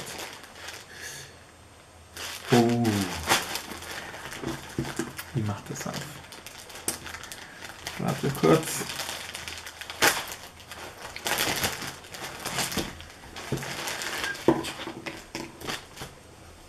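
Plastic wrapper crinkling and rustling in the hands as a folded T-shirt is unwrapped, in irregular crackling bursts.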